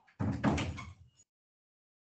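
A single dull bang lasting about a second, heard through a video-call microphone.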